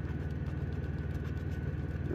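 Steady low rumble of an idling engine, with faint scratches of a coin on a scratch-off lottery ticket.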